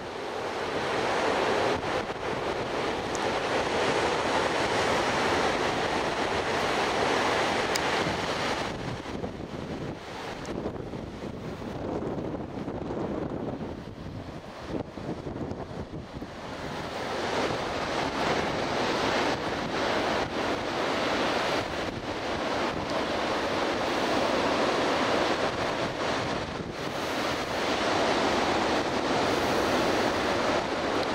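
Ocean surf breaking on a sandy beach: a continuous wash that swells, eases for several seconds near the middle, then builds again, with wind buffeting the microphone.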